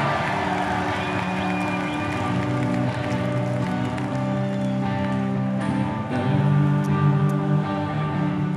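A rock band playing the slow opening of a song live: held, ringing chords that change about three seconds in and again about six seconds in.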